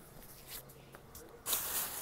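Quiet room tone, then about one and a half seconds in a short hissing intake of breath just before the man speaks again.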